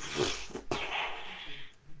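A man clearing his throat: a rough, breathy rasp lasting about a second, after a short click.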